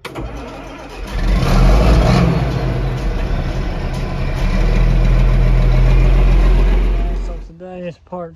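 A tractor engine, heard from inside the cab, starting up and running, louder from about a second in. It cuts off suddenly near the end.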